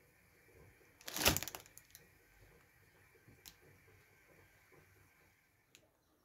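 A short crackle of a clear plastic salad-greens container being handled, about a second in, followed by a few faint ticks in a quiet room.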